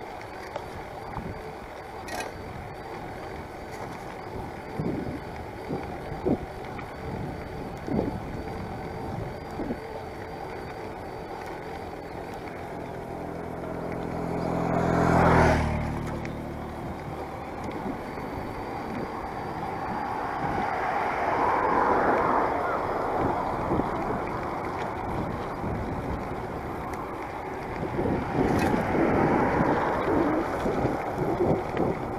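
Wind and road noise on a handlebar-mounted camera while riding a bicycle, with a car passing on the adjacent road about halfway through, its engine pitch dropping as it goes by. More traffic swells up later on, and another vehicle approaches near the end.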